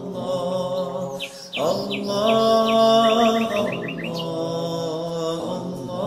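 Songbirds chirping: a few quick downward chirps, then a rapid run of chirps about three seconds in. Under them, sustained chanting of an Allah dhikr in long held notes that break off briefly about a second and a half in.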